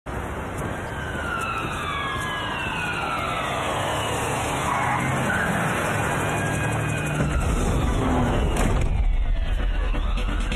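Film sound of street traffic, with several slowly falling, siren-like tones in the first half and a deep low rumble coming in about seven seconds in.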